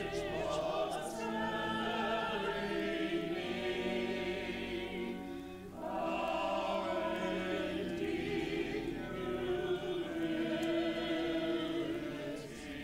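A choir singing in sustained phrases, with a short break between phrases about six seconds in.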